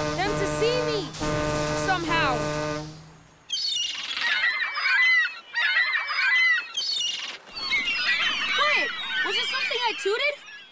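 A cartoon diesel engine's horn held in one long steady blast, cutting off about three seconds in. A flock of seagulls then squawks and cries in noisy bursts.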